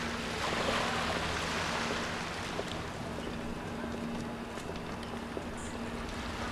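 Wind rushing on the microphone, strongest in the first two seconds, over a faint steady low hum.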